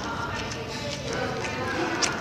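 Background chatter of many voices in a busy fast-food restaurant, with scattered light clicks and clatter.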